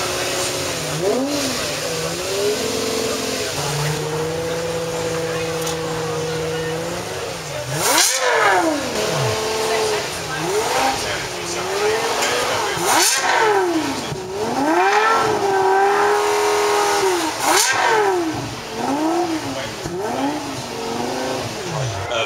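Lexus LFA's V10 idling in neutral, then revved hard three times, each rev shooting up and dropping back within about a second, with smaller blips of the throttle in between.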